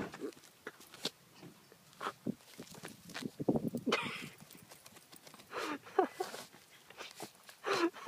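Dachshund digging in dry, stony dirt with its front paws and nose in the hole: irregular scraping, crunching and scattering of soil, with the dog's snuffling breaths, busiest about halfway through.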